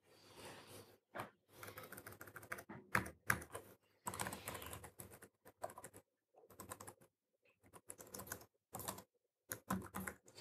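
Laptop keyboard typing, faint: irregular bursts of quick key clicks with short pauses between them.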